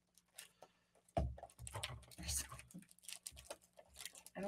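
Fingernails picking and scratching at the plastic shrink-wrap on a small cardboard box, giving scattered faint crinkles and ticks. A soft knock comes about a second in.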